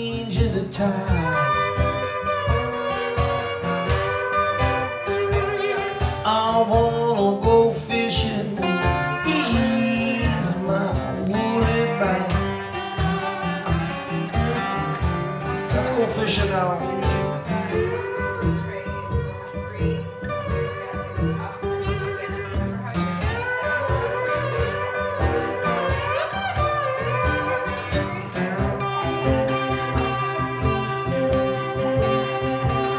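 Two acoustic guitars, one a twelve-string, playing an instrumental blues break with a busy plucked rhythm and some notes sliding in pitch.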